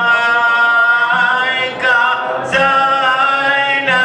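Men singing an unaccompanied devotional qasida, the lead voice amplified through a microphone and holding long, drawn-out notes. A short break about two and a half seconds in.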